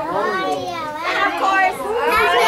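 Young children's voices talking and calling out over one another, high-pitched and unbroken.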